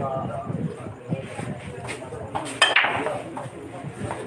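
Pool break shot: the cue ball slams into the racked balls with a sharp clack about two and a half seconds in, followed by a brief clatter of balls knocking together as the rack scatters.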